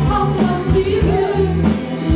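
Live rock band with violins, cello and drum kit playing over a steady beat, a woman singing gliding lines above it.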